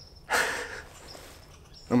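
Faint, thin, high-pitched chirping, which the hunter is about 90% sure is a red squirrel chirping at him. A short breathy hiss of noise comes about a third of a second in and is the loudest sound.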